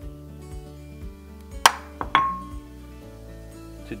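A utensil knocking twice against a ceramic bowl while butter is scooped out. The first knock is sharp and the second rings briefly, over steady background music.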